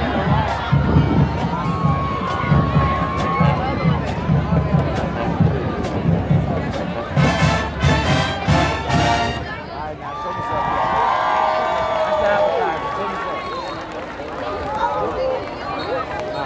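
High school marching band playing on the field, with a pulsing bass line and drum hits, stopping about nine to ten seconds in. Crowd voices and shouting run over the music and carry on after it ends.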